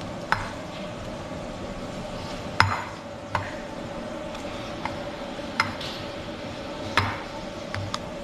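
Hand kneading a soft potato and cheese dough on a ceramic plate, with about seven sharp, irregular knocks as the plate is bumped against the table. A steady hum runs underneath.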